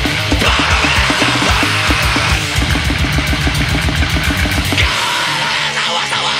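Grindcore/punk band playing fast and loud: distorted guitars over rapid drumming. The deepest bass thins out about five seconds in.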